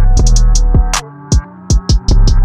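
Trap instrumental beat: a long, deep 808 bass note under hi-hats and a melody, with a snare hit just before the bass drops out about halfway through, leaving short 808 hits that fall in pitch.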